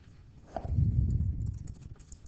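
A quick run of keystrokes on a computer keyboard as a word is typed. It is heard as a dense cluster of low thuds starting about half a second in and lasting around a second.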